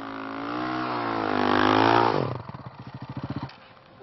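Rally motorcycle engine revving, its pitch and loudness rising, then dropping abruptly a little after two seconds. It falls to a slow putter of separate firing beats, which stops about three and a half seconds in.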